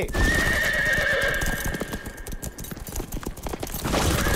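Several horses galloping on a dirt track: a dense, rapid rush of hoofbeats, with one long horse neigh over the first two-thirds.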